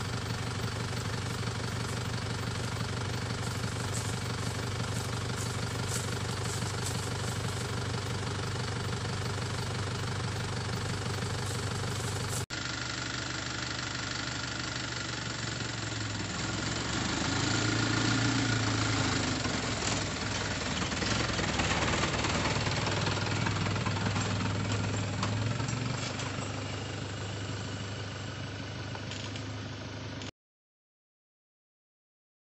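A vehicle engine running steadily at idle. After a cut about twelve seconds in, the engine sound grows louder and rises and falls for several seconds before settling.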